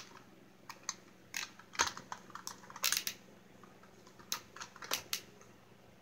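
Irregular plastic clicks and taps from a small toy ladder fire truck being handled and set down, with a few louder knocks spread through.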